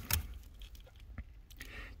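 Faint handling of a plastic wiring connector as it is pulled off the brake light switch, with one small click a little past a second in.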